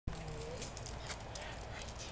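Faint scattered clicks from a schnauzer's collar and tags as its collar is handled. A brief soft whine comes in the first half-second, bending up at its end.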